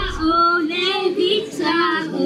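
Young girls singing into handheld microphones, amplified through a small street amplifier, holding long sung notes.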